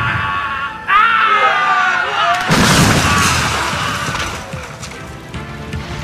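Animated battle soundtrack: a loud, drawn-out shout over dramatic music, then a sudden boom about two and a half seconds in that fades away slowly.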